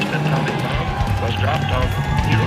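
Indistinct voices over rough low noise, a spoken or sound-collage passage inside an album track, with a steady held tone coming in near the end.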